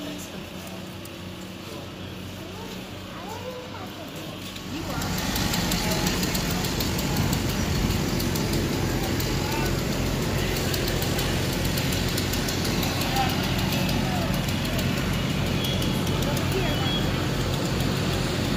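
Faint voices at first, then about five seconds in a louder, steady engine takes over: a fire engine's diesel running with a pulsing low rumble and a dense hiss above it, with voices over the top.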